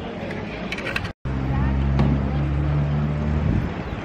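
Street sound with a vehicle engine running close by: a steady low hum that comes in after a brief dropout about a second in and fades near the end.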